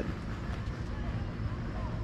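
Steady outdoor background noise, a low rumble with no distinct events.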